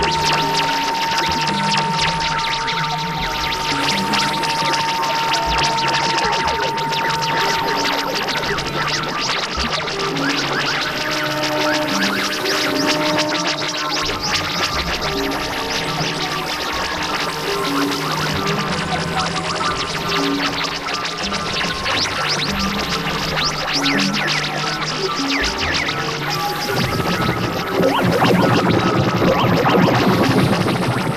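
Experimental electronic noise music from synthesizers: a dense noisy texture full of fine clicks over short, scattered low synth notes. A single high tone is held for the first several seconds, and the sound grows louder and denser near the end.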